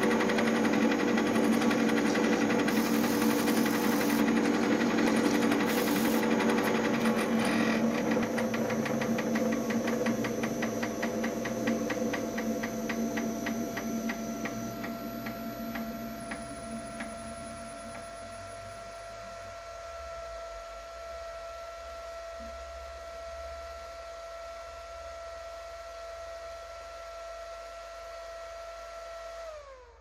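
Lathe motor running steadily with an even hum, loudest at first and easing off. A fast, even ticking runs through the middle stretch and dies away. Near the end its pitch slides down and the sound cuts off as the lathe stops.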